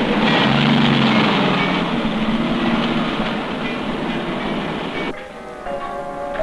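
Steady, loud mechanical din of vehicles, with a brief low hum about a second in. It cuts off sharply about five seconds in and music begins.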